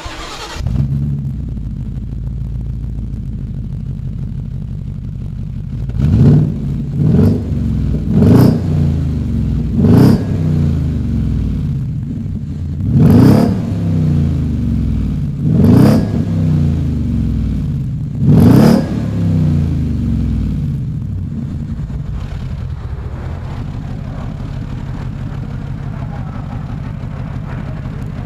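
Ford Mustang GT 5.0 V8 with a custom stainless-steel sport exhaust starting up about a second in and idling. It is then revved in seven short throttle blips, spread over roughly six to nineteen seconds in, before dropping back to a steady idle.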